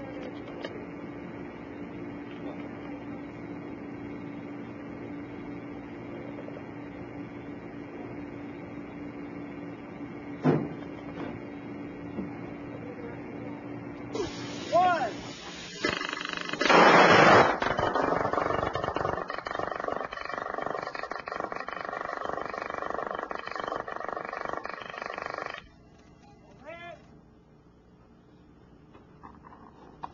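A steady low hum, then, past the middle, a loud burst as the laser-propelled lightcraft lifts off, followed by its harsh, rapid buzz of laser-heated plasma pulses at about 25–28 per second. The buzz holds for roughly nine seconds of powered flight and cuts off suddenly.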